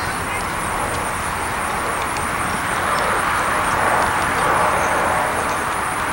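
Jet airliner engine noise at taxi: a steady rushing noise that swells a little around the middle.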